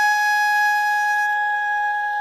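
Hichiriki, the Japanese double-reed bamboo oboe, holding one long, steady, reedy note that gets slightly softer near the end.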